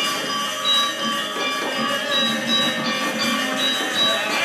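Sasak gamelan ensemble playing: metallophones ringing with held, overlapping tones over light drum strokes.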